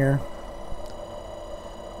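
Small DC motor running faintly at low speed, fed in pulses by an SCR capacitor-discharge circuit with a 15-volt zener: a low steady whine, with one light click about a second in.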